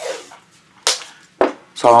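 Blue masking tape pulled off its roll: a sharp, hissy rip a little under a second in, then a shorter, duller rip about half a second later.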